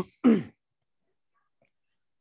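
A man briefly clears his throat once, a short sound falling in pitch, just after a spoken "um".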